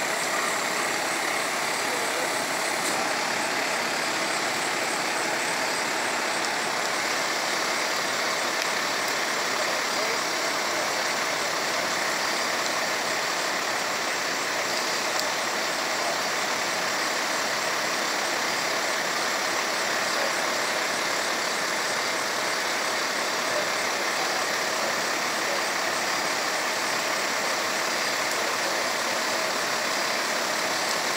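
Parked fire engine running steadily, an even engine noise with no changes in level.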